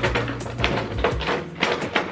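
Clear plastic packaging crinkling and rustling, with a run of sharp clicks, as pearl-beaded decorative pumpkins are handled, over background music.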